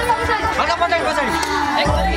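A group of people chattering and calling out together. The dance music's beat drops out and comes back in near the end.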